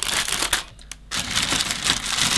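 Clear plastic bags over plastic model-kit sprues crinkling as hands press them down into a cardboard box, in two spells with a brief pause about half a second in.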